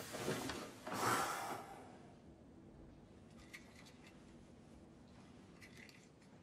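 Two loud rushes of noise in the first two seconds as a man sits down heavily on a bed, the second the louder. Then a few faint clicks.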